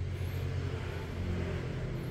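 A low, steady mechanical hum, swelling slightly past the middle.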